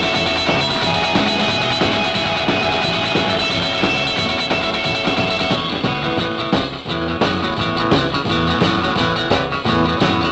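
Instrumental 1950s rock-and-roll record: an electric guitar plays a lead line over bass and drums, and the arrangement changes about six seconds in.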